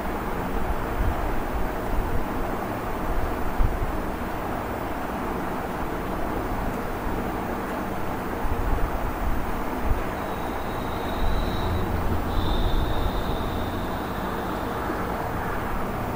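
Steady low rumble and hiss of background noise, with a faint high whistle that comes in about ten seconds in and lasts a few seconds.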